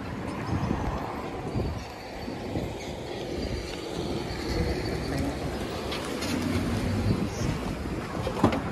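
Pickup truck engine running as the truck pulls up close, over outdoor road noise and wind on the microphone; the sound grows a little louder toward the end.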